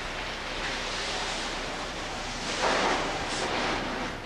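Water spraying from a hose nozzle onto a motor grader's battery box, washing corrosion off the battery cables and terminals: a steady hiss of spray that swells louder a little past halfway.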